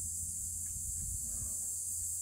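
Steady background noise: a low hum with high hiss, and only a faint brief sound about a second and a half in.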